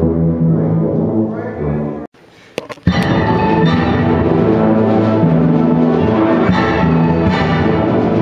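High school wind band playing full, sustained chords with brass and low winds. About two seconds in, the sound drops out for almost a second with a few clicks, then the band comes back at full strength.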